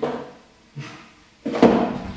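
Light knocks of objects handled on a tabletop, the loudest about a second and a half in as a cardboard box of coffee filters is set down on the table.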